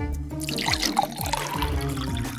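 Water poured from a glass into a stainless steel dog bowl, splashing from about half a second in, over background music.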